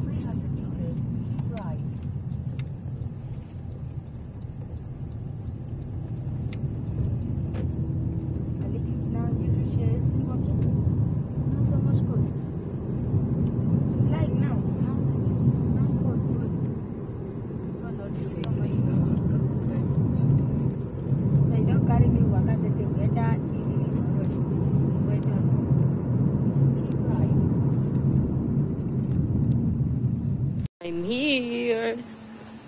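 Road and engine noise inside a moving car's cabin: a steady low rumble that swells and eases, with indistinct voices beneath it.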